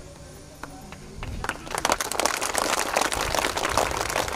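Audience applause: a few scattered claps, then many hands clapping together from about a second and a half in.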